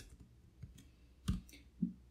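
A few computer keyboard keystrokes clicking faintly, the sharpest one a little past halfway, as a line of code is typed and entered.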